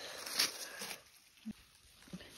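Rustling of leafy undergrowth as it is brushed and pushed aside, with a brief swish about half a second in and a single short sharp click about a second and a half in.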